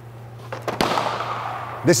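A stock plastic fender flare tossed onto the floor: a sharp hit about half a second in and a louder one just after, then a scraping clatter that fades over about a second.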